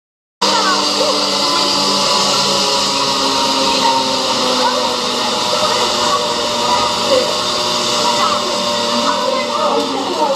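Steady outdoor street noise starting abruptly about half a second in: a loud hiss with children's voices and chatter over it, and a low steady hum through the first half.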